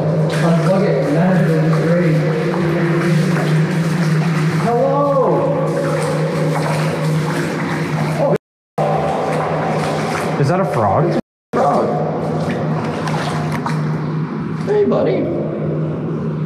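A steady low hum with muffled voice-like sounds, echoing inside a concrete storm-drain pipe; the sound cuts out twice for an instant.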